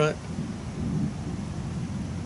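A low, uneven rumble with a faint hiss above it, swelling slightly about a second in.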